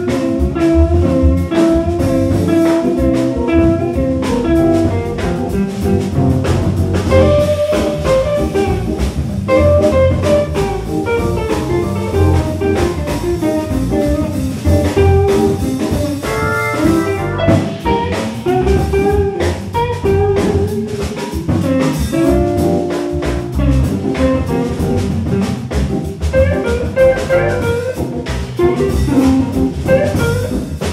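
Live funk-jazz groove: a hollow-body electric guitar leads over Hammond B-3 organ chords and a drum kit, with the saxophone not playing.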